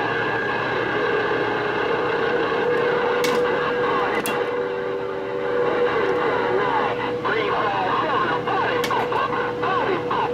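Galaxy CB radio receiving a busy channel: steady static hiss with garbled, unintelligible voices, steady whistling tones and warbling squeals from overlapping transmissions, and a few sharp clicks.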